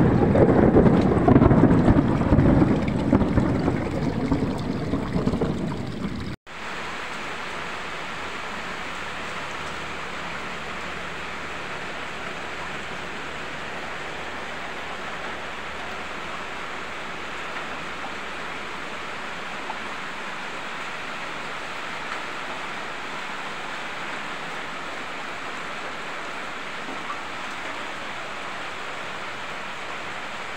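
Loud rolling thunder over heavy rain and rushing floodwater, cut off abruptly about six seconds in. After that, a steady, even hiss of rain and flowing floodwater.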